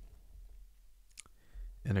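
Quiet room tone with a low hum and a single short click about a second in; a man's voice starts just at the end.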